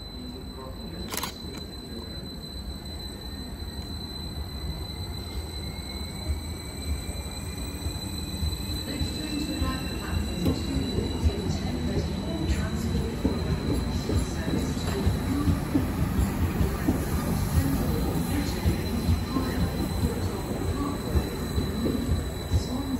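Transport for Wales multiple-unit passenger train running through the station on the main line, growing louder as it approaches and passes. A faint rising whine sounds a few seconds in, and a steady high tone runs underneath. From about halfway on, quick clicks of wheels over rail joints come as the coaches go by.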